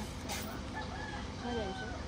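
A rooster crowing in the background, a drawn-out call over low murmuring voices.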